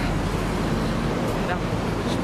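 Steady street noise with road traffic running past, loud and close on the handheld camera's microphone.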